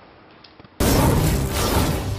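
A sudden loud, noisy boom-like sound effect starts about a second in and lasts about a second and a half before cutting off abruptly. Before it there is only faint room ambience with a couple of light clicks.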